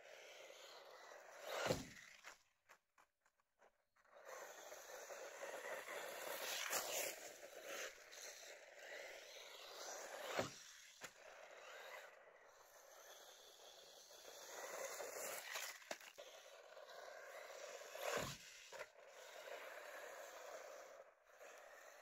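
Faint scraping of a small electric RC truck's tyres over a gravel dirt track, rising and falling as it drives at a distance, with three dull thumps.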